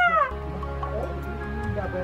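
A drawn-out voice falling in pitch ends a quarter second in, then background film music with sustained notes over a low drone.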